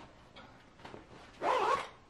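A dog gives one short, wavering call about one and a half seconds in.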